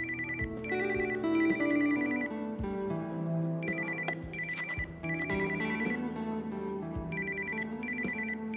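Mobile phone ringtone: a high electronic trill that rings in groups of two short bursts and one longer one, each group followed by a pause of about a second and a half. It repeats twice, and a third group begins near the end, over soft background music.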